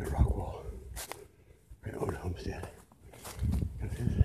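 Footsteps crunching through dry fallen leaves, in uneven bursts about every second or so, with the rustle and knock of a hand-held phone moving.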